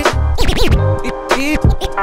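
Hip hop music from a DJ blend, with turntable scratching: quick back-and-forth pitch sweeps of a record over the beat about half a second in.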